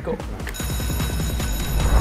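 Game-show countdown alarm: a ringing, bell-like tone comes in about half a second in over a bass-heavy music swell that grows loudest as the timer runs out.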